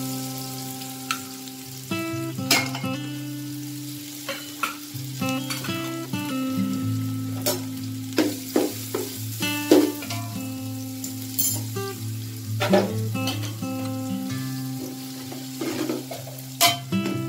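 A metal spoon clinking and scraping against an aluminium pot as rice is stirred, with sharp irregular clicks throughout, over steady background music.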